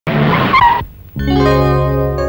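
Car tyres skidding briefly, a noisy squeal lasting under a second. About a second in, background music starts with a held chord.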